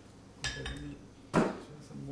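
Ceramic dishware clinking twice, about half a second in and again near a second and a half; the second clink is louder.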